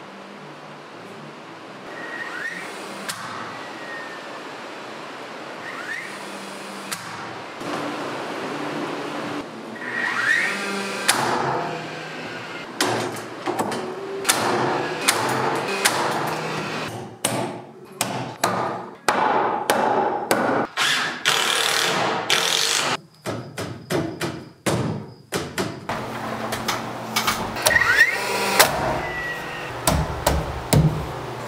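Cordless framing nailer shooting nails into 2x4 framing lumber: a string of sharp shots coming in quick clusters through the second half, with knocks of boards being set in place. The first part is quieter, with lumber being handled.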